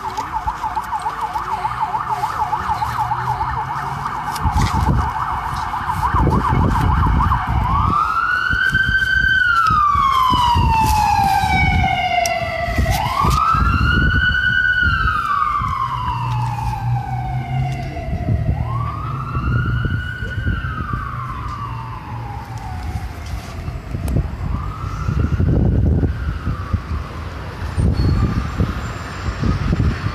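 An emergency vehicle siren: a fast yelp for about the first seven seconds, then a slow wail that rises and falls four times, the last sweep fainter.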